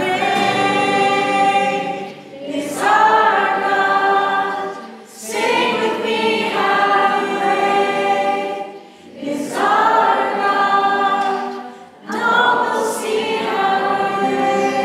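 Group of mostly female voices singing a worship song together, accompanied by acoustic guitar and ukulele. The melody comes in sung phrases of about three seconds, with a short breath-gap between each.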